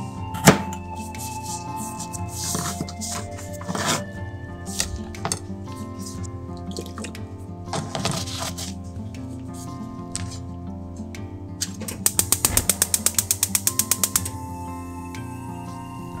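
Light background music throughout. A knife strikes a plastic cutting board once about half a second in, burdock pieces splash in a bowl of water, and near the end a gas hob's igniter clicks rapidly, about nine clicks a second for just over two seconds.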